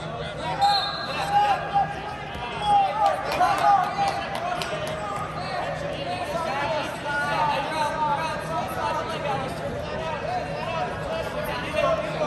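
Several people calling out and shouting, words unclear, through a wrestling bout, with a few sharp smacks about two to four seconds in.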